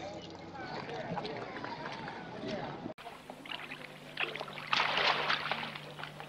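Poolside sound from a film soundtrack: people talking in the first half, then after an abrupt cut, water splashing in a swimming pool, loudest about five seconds in, over a steady low hum.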